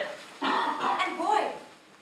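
A woman speaking one phrase of a stage monologue, lasting about a second and trailing off near the end.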